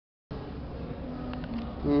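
A steady low buzzing hum that starts abruptly just after the beginning, with a person murmuring "mm-hmm" near the end.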